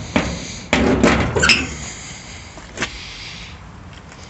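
Sheet-steel body panels of a 1937 Dodge clunking and rattling as they are handled: a knock, then a loud clatter lasting under a second that ends in a brief metallic ring, and one more click a moment later.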